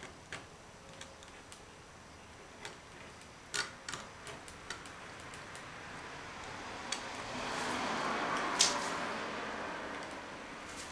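Gloved hand working directly on a spray-painted board: a scatter of light clicks and scratches, then a rubbing, scraping noise that builds over the last few seconds, with one sharp click near the end.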